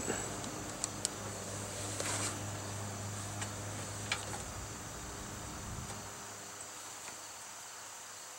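Quiet background under the hood: a low steady hum that fades out about three-quarters of the way through and a thin, steady high whine, with a few faint light clicks from multimeter probes being handled on the battery terminals.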